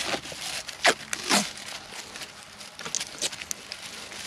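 Fabric microporous tape being peeled off its roll and wound around a finger dressing: a few short peeling pulls in the first second and a half, then quieter handling of the tape.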